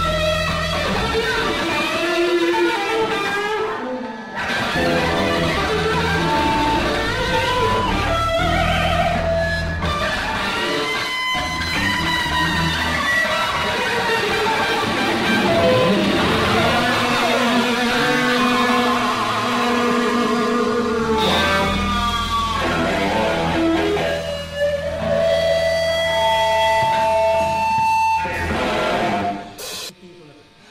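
Live rock band with distorted electric guitars playing lead lines full of bends and slides over bass and drums. There are brief stops along the way, and the music breaks off near the end.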